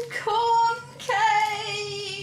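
A woman singing long held notes. There is a brief break just before one second in, then a second long note that sags slightly in pitch.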